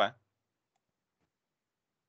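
The last syllable of a spoken question, cut off right at the start, then dead silence.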